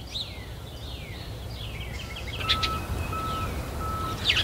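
Small birds chirping over a steady low outdoor rumble. From about halfway, a series of short, evenly spaced beeps, about one and a half per second.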